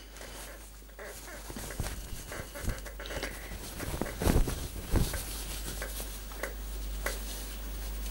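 A fabric apron being unfolded and handled: irregular rustling and flapping of cloth, with a couple of louder soft knocks about four and five seconds in.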